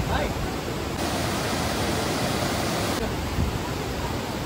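Steady rushing of a river flowing over boulders below a bridge, a little fuller about a second in.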